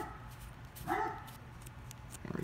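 Dogs barking in the background: two barks about a second apart.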